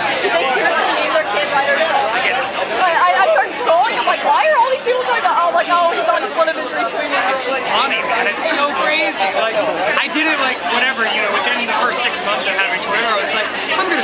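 People talking: close-up conversation mixed with the chatter of a crowd, several voices overlapping without a pause.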